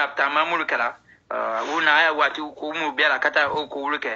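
A man speaking in a band-limited, radio-like recording, with a brief pause about a second in.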